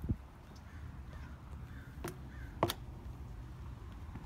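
A crow cawing, two short harsh caws about two seconds in and half a second apart. A dull thud comes at the very start, over low background rumble.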